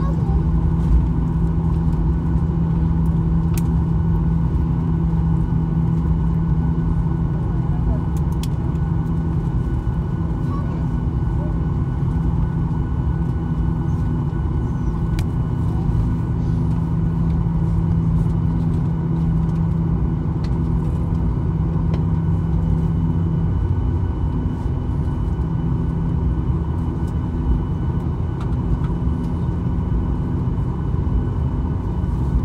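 Airliner cabin noise while taxiing: a steady low rumble of the jet engines at idle and the cabin air system, with a steady hum over it. One low hum drops away about three-quarters of the way through.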